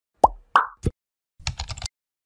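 Intro animation sound effects: three quick pitched pops about a third of a second apart, then half a second of rapid clicking like keyboard typing as a search bar fills with text.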